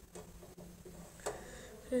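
Faint clicks and scrapes of a screwdriver working a screw in a computer case's steel drive bay, with one sharper click a little past halfway.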